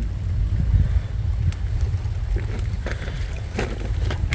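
Wind buffeting the microphone, a steady low rumble, with a few faint snaps of chili stems as peppers are picked by hand.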